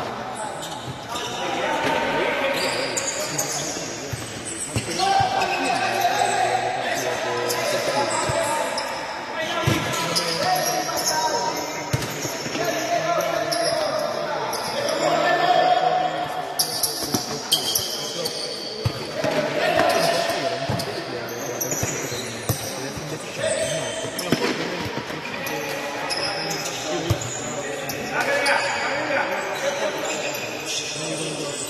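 A futsal ball being kicked and bouncing on an indoor court, with repeated sharp impacts, mixed with players' shouts.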